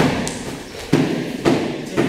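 Four heavy thuds in two seconds from taekwondo training: kicks striking and bare feet landing on the training floor.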